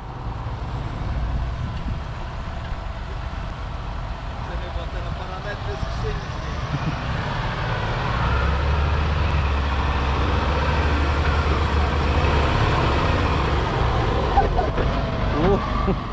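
A Deutz-Fahr Warrior tractor's diesel engine labouring under load as it hauls a full silage trailer up onto a maize silage clamp. The deep engine sound grows louder as the tractor comes closer, and is heaviest about halfway through, on the climb.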